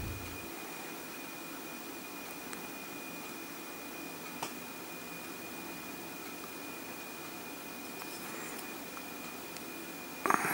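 Faint steady hiss of room tone with a thin, steady high whine running through it, and one soft click about four and a half seconds in.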